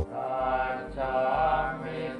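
Thai Buddhist monks chanting together in long, sustained phrases on a few steady pitches, with brief breaths between phrases.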